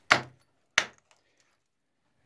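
Steel rock hammer striking hard rhyolite rock twice, about two-thirds of a second apart: sharp, ringing clinks of metal on stone while chipping ore samples from the face.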